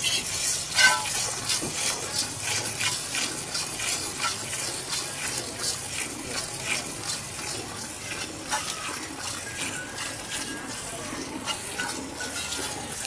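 Hand-milking a buffalo: streams of milk squirting from the teats into a pail in quick, rhythmic hissing strokes, about two or three a second.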